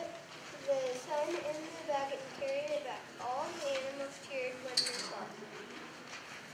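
A child's high voice speaking in short phrases, reading lines aloud, with a brief click a little before the end.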